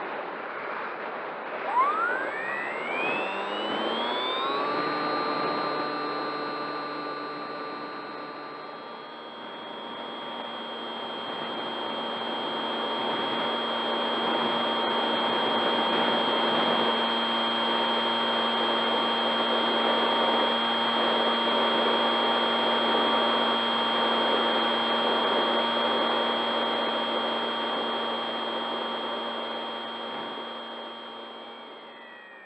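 Bixler foam RC plane's electric pusher motor and propeller whining over rushing wind, picked up by the onboard camera. About two seconds in the whine rises steeply in pitch as the motor speeds up, then holds steady, and about nine seconds in it settles to a new steady pitch.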